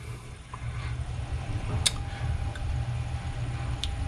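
A steady low hum with a faint thin whine above it, and two brief faint clicks about two seconds apart.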